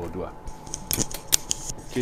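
Clip-on wireless microphone being handled: a quick run of sharp, irregular clicks and rubbing taps, about a dozen over a second, some of them louder than the voices.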